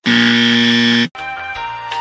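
A loud, steady electronic buzzer tone lasting about a second that cuts off abruptly, after which background music with plucked notes carries on.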